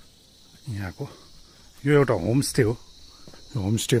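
A steady high-pitched insect chorus running throughout, with a person's voice breaking in for a few short phrases, the loudest about two seconds in and again near the end.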